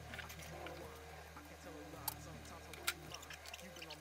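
Handling noise from a plastic feeding tub and feeding tongs: two short sharp clicks, about two and three seconds in, over a steady low hum.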